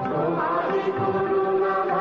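Bengali devotional song: voices chanting over sustained instrumental accompaniment, with a melody gliding up and down about half a second in.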